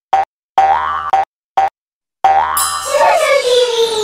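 Cartoon logo sound effects: a handful of short bouncy pitched blips, then about two seconds in a long shimmering sweep whose tones glide steadily downward.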